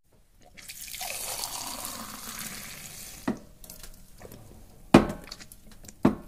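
A pint of beer being poured from a bar tap into a glass: a hiss of running liquid for about two and a half seconds that tails off, followed by two sharp knocks.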